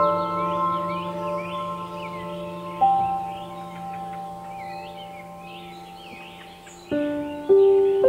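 Slow ambient music of single ringing notes, each struck and left to fade, with a new note about three seconds in and two more near the end. Birdsong chirps continuously underneath.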